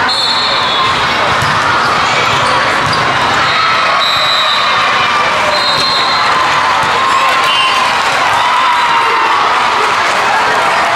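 Din of a large hall full of volleyball courts: volleyballs being hit and bouncing, over many voices shouting and chattering, with a few short high-pitched tones on top.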